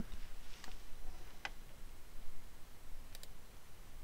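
A few faint computer mouse clicks: a single click about a second and a half in and a quick pair about three seconds in, over low background hiss.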